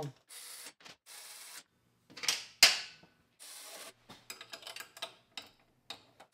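Hand ratchet clicking in short bursts as a skid-plate bolt is run down. Two sharp metal knocks come about two and a half seconds in.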